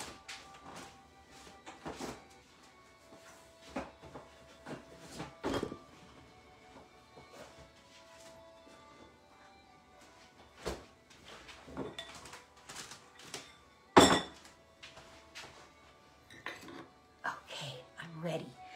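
Scattered knocks and thunks from someone moving about a kitchen out of sight, the loudest one about 14 seconds in, with faint music underneath.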